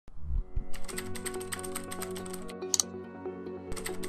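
Ident music with a held chord, and a rapid run of computer-keyboard typing clicks laid over it as a sound effect. The typing stops about two and a half seconds in, and a couple of short bursts of clicks follow near the end. A few low thumps open it.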